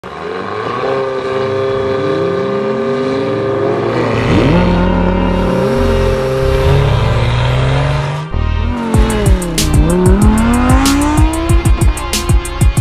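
Car engines revving and accelerating, with gliding pitches and tyre squeal, mixed with music. About eight seconds in the sound breaks off briefly, then music with sharp, fast hits takes over, with engine-like pitches sweeping down and back up beneath it.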